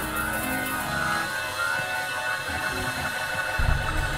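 Church instrumental backing of sustained keyboard chords, with a bass line coming in near the end.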